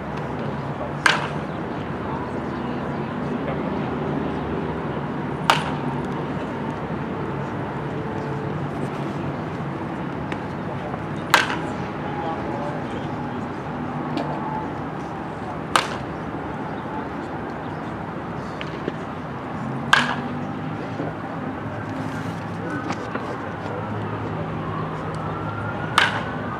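A baseball bat hitting pitched balls: five sharp cracks, spaced about four to five seconds apart.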